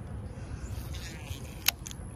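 Steady low wind rumble on the microphone, with a brief soft hiss just under a second in and one sharp click about three-quarters of the way through, from a fishing rod and spinning reel being handled.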